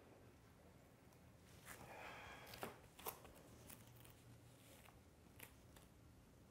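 Near silence: faint room tone with a few soft ticks and rustles of a body shifting weight on a yoga mat.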